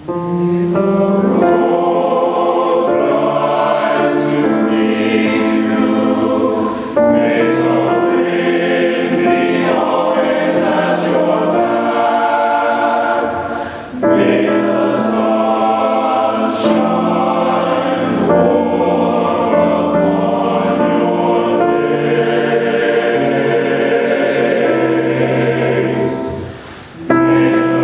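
Men's choir singing in harmony, several voices holding notes together, with brief pauses between phrases about 7 and 14 seconds in.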